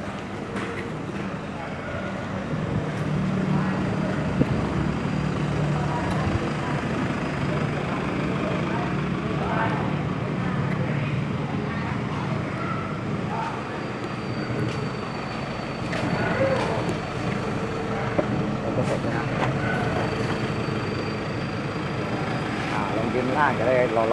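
Toyota Fortuner's diesel engine pulling in slowly and then idling steadily, after treatment for knocking and black smoke; the engine is running quiet and smooth. Faint voices in the background.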